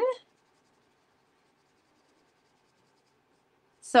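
Near silence, with only faint scratching of a felt-tip marker colouring on paper.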